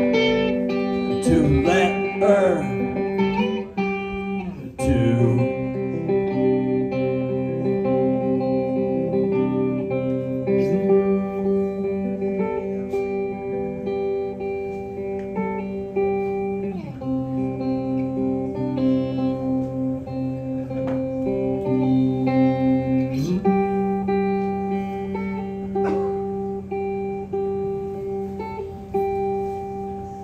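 Electric guitar played solo through an amplifier: held chords ring out and change every few seconds, sliding in pitch between some of them, and the playing dies down near the end.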